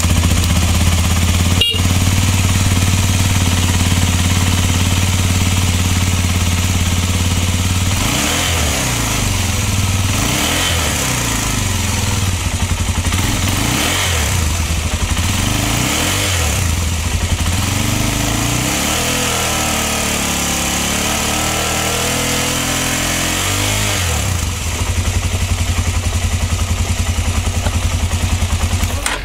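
Suzuki Djebel 250's single-cylinder four-stroke engine idling, then revved in a series of short throttle blips that rise and fall back. It settles to idle again, and near the end it runs a little louder with an even, pulsing beat.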